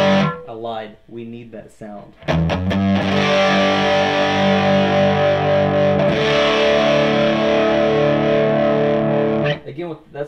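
Gibson Les Paul electric guitar played through a Reinhardt MI-6 18-watt tube amp, with the gain cranked and the power scaling turned down, giving a distorted, overdriven tone. A ringing chord is cut off at once, followed by about two seconds of quieter, choppy picking. Then comes a long sustained chord that changes to another about six seconds in and is cut off shortly before the end.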